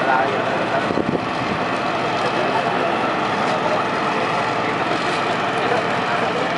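Steady outdoor din at a large building fire: vehicle engines running and people's voices in the background.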